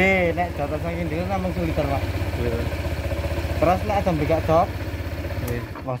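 Honda PCX 160's single-cylinder scooter engine idling steadily, then cutting off abruptly near the end.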